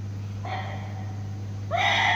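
A woman's high-pitched sung cry in Vietnamese tuồng style, entering faintly about half a second in and breaking out loudly near the end, over a steady low hum.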